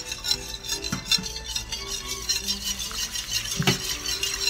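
Wire whisk stirring a thick butter-and-flour roux for béchamel in a stainless steel pot, its wires clicking and scraping rapidly against the metal, with a few louder knocks.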